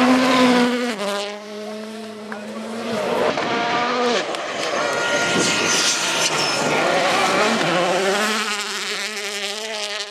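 World Rally Cars on a gravel rally stage, their turbocharged four-cylinder engines revving hard. The pitch drops and climbs several times as they brake, shift and accelerate through the corners, and rises again near the end.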